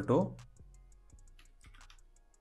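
Computer keyboard being typed on: several light, separate key clicks.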